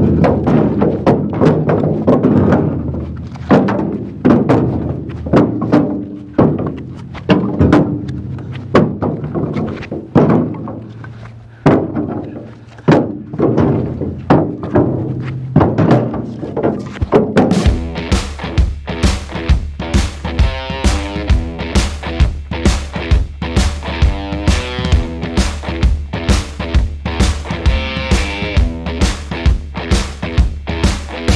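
Background rock music under loud, irregular wooden thunks of split firewood pieces being thrown into a dump trailer. From a little past halfway, the music's fast, steady beat takes over.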